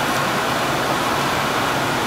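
Steady, even rushing background noise of the laboratory's ventilation and equipment fans, with no separate events.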